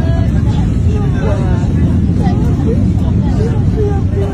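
Many passengers' voices crying out and calling over one another inside an airliner cabin, over a loud, steady low rumble of cabin noise.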